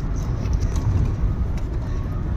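Steady low rumble of a moving car's engine and road noise heard from inside the cabin.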